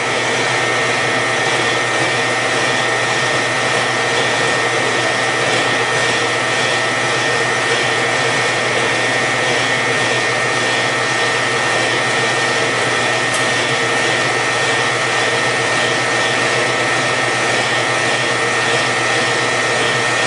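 Harbor Freight metal-cutting bandsaw running under load as its blade cuts through the stock in the vise. The electric motor and blade make a constant whir with a steady high whine.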